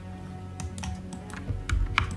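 A few scattered clicks of a computer mouse and keyboard being worked, over quiet background music with steady held notes.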